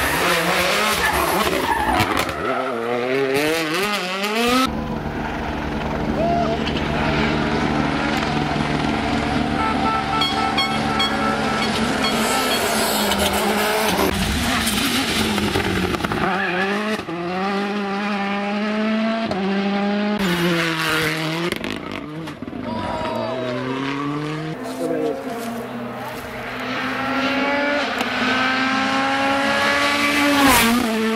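World Rally Cars' turbocharged engines revving hard as they pass at speed on a tarmac stage, the pitch climbing through each gear and dropping at each upshift or lift, with several cars in turn; one comes by loudest right at the end.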